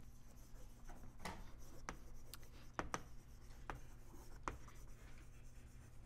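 Chalk writing on a blackboard: a run of faint, irregular taps and scratches as words are chalked out.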